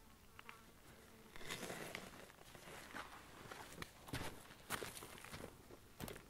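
A flying insect buzzing faintly, with scuffs and footsteps on gravelly dirt, loudest in the second half.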